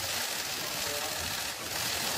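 Dense, steady clatter of many press cameras' shutters firing in rapid bursts.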